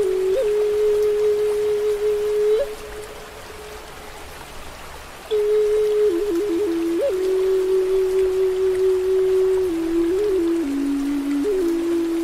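Native American flute playing slow held notes with quick grace-note flicks and short trills, over a steady hiss of rain and flowing water. The flute breaks off for about two and a half seconds, leaving only the water, then comes back in and steps down to lower notes near the end.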